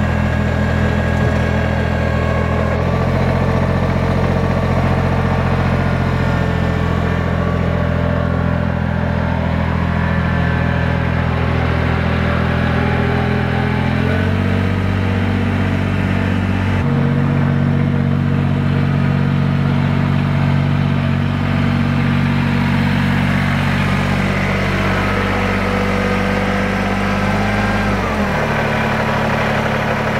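Kubota BX23S subcompact tractor's three-cylinder diesel engine idling steadily, its note shifting abruptly a few times.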